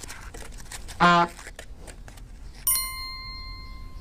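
Frozen orange-juice ice cubes tipping into a plastic jug as a few light clicks and clatters. Near the end a bright ding sounds and rings on steadily.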